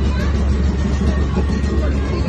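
Fairground noise: a loud, steady low hum from machinery, with people's voices and music mixed in.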